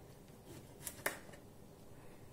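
Kitchen knife slicing a cucumber on a cutting board: two sharp knocks close together about a second in as the blade cuts through and meets the board, then a fainter one.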